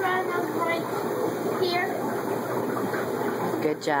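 Steady rush of running water from the aquarium filtration in a room of fish tanks, with a voice near the end.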